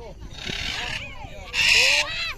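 Parrots screeching harshly: a shorter screech about half a second in and a louder one near the end, with people's voices underneath.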